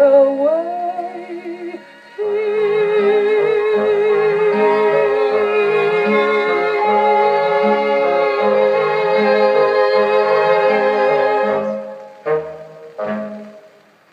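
The end of an orchestral ballad: a woman's voice holds the long final note with vibrato over strings and a moving bass line, fading out about three-quarters of the way through. Two short closing orchestral chords follow near the end.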